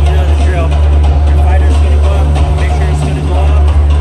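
Loud arena sound system playing bass-heavy music with voices over it, the deep bass steady throughout.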